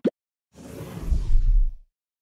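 Whoosh sound effect of an animated TV channel logo ident, starting about half a second in and lasting just over a second, with a deep low boom swelling under it. Its hiss fades downward before it cuts off abruptly.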